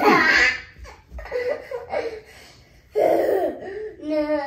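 A toddler laughing in three high-pitched bouts, the loudest right at the start.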